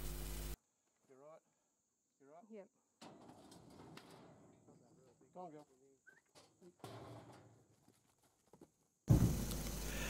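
Mostly near silence, broken by a few faint short wavering calls: two about a second in and a second apart, and another about five seconds in, with faint scuffling between them. A low hum starts and stops at either end.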